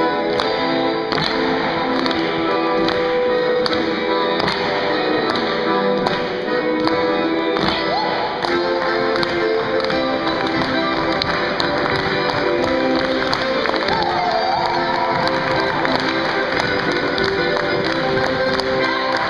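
Lively Russian folk dance music, with the dancers' boots stamping and tapping on a wooden gym floor.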